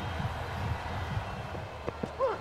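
Steady low hum of stadium background noise, with faint indistinct low sounds over it and a short click near the end.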